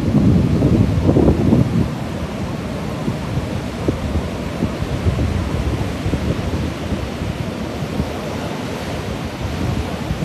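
Wind buffeting a phone microphone over the steady wash of storm surf, gusting harder in the first two seconds and then settling to an even rush.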